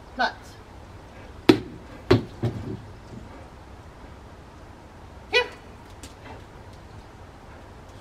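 Two sharp knocks about half a second apart, followed by a brief softer low rumble.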